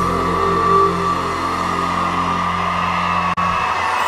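Live norteño band music: the band holds a sustained chord over a steady bass note, without singing. The sound cuts out for an instant a little after three seconds.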